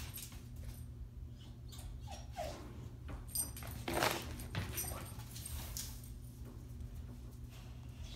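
A dog moving about on carpet: soft scuffs and knocks from its paws and body, the loudest about four seconds in.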